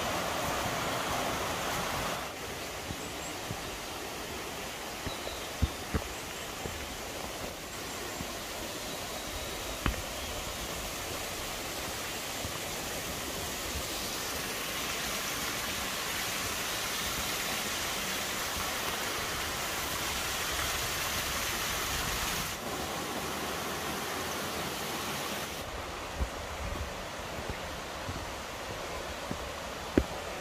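Mountain stream rushing over granite cascades and a small waterfall: a steady rush of water that changes abruptly in level a few times. A few faint sharp ticks sound over it.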